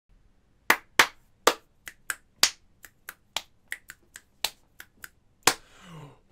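A person's hands making a string of about sixteen sharp claps, irregularly spaced and uneven in loudness.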